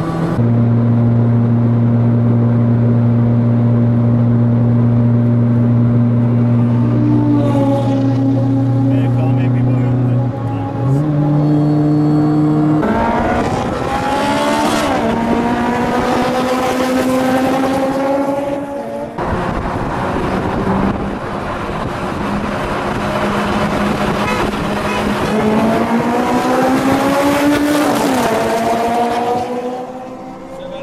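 Honda S2000 F20C engines with cold-air intakes and single exhausts. They run at a steady drone, then rev up hard in long rising climbs from about a third of the way in. The sound breaks off suddenly near the middle, climbs again, and falls away near the end.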